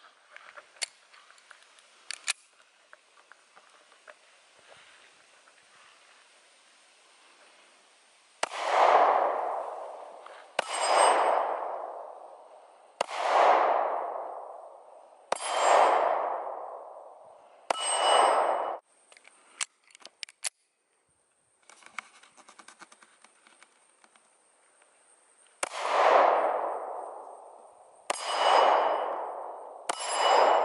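Seven pistol shots, each followed by the ringing of a steel plate target: five about two seconds apart, a pause, then two more near the end. A few light clicks of the pistol being loaded come first.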